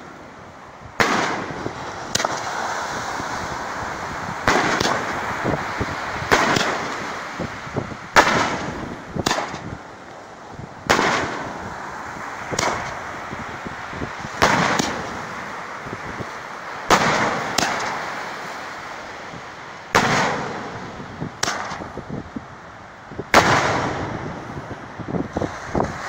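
Consumer canister firework shells, color and salute shells, going off one after another: about fifteen sharp bangs spaced one to two seconds apart, each trailing off in an echoing tail.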